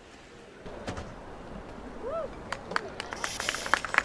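Trackside sound of a long jump attempt. A short shout comes about two seconds in. A quickening series of sharp slaps follows, with a burst of hiss near the end as the jumper strikes the runway in spikes and lands in the sand pit.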